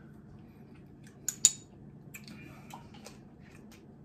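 Small tabletop handling sounds: two sharp clicks about a second and a half in, the second much the louder, then a run of light ticks and scrapes. These come from a wooden tasting spoon being set down and a cap being screwed back onto a glass hot-sauce bottle.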